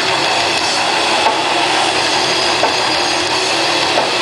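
Grindcore band playing live: a loud, dense, unbroken wall of distorted electric guitar and drums.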